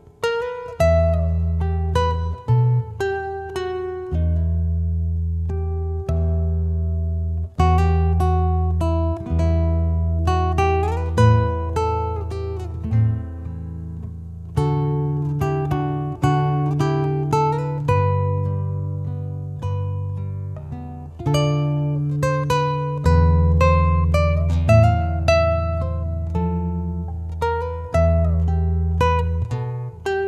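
A Jose Antonio 6C-CE cutaway nylon-string classical guitar fingerpicked, a melody of plucked notes over ringing bass notes. It is heard through its built-in pickup and EQ into a speaker.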